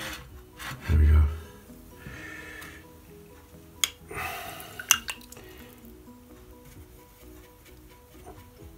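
Background music, with a paintbrush being swished and tapped in a water jar: brief splashy rustles and two sharp clinks about four and five seconds in.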